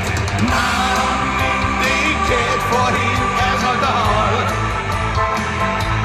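Live rock band playing loud and steady, with drum kit and guitar and a long held melodic note through the first part, under a male singer's vocals.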